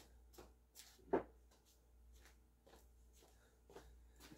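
Quiet room tone with faint scattered clicks and rustles, and one short, louder knock about a second in.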